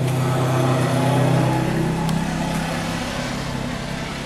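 A motor vehicle engine running with a steady low hum that grows a little fainter in the second half.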